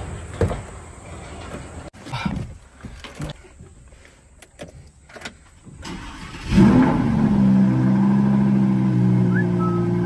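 Lamborghini V10 engine starting from inside the cabin: a few clicks and knocks of the door and controls, then about six and a half seconds in the engine catches with a loud flare of revs and settles into a steady idle.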